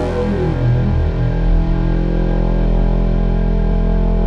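Electronic dance music from a DJ mix in a breakdown: a falling synth sweep ends just after the start, then low sustained bass tones play with the top end muffled and no drums.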